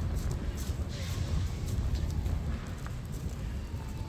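Outdoor ambience dominated by a steady low rumble, typical of wind buffeting a handheld microphone while walking, with a few faint clicks and distant voices.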